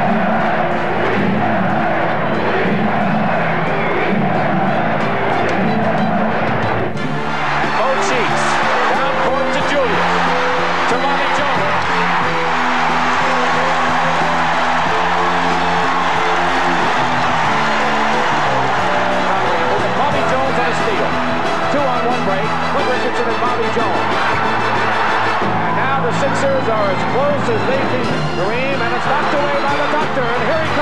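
Music playing over a loud crowd cheering, with held notes underneath and the crowd noise filling the middle range throughout.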